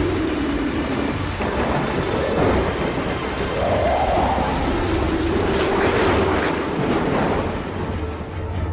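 Heavy rain pouring down in a steady dense hiss, with thunder rumbling low underneath.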